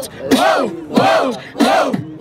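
Human beatbox through a handheld microphone: a regular beat, each pulse a low hit topped by a rising-and-falling vocal sweep, about three pulses in two seconds.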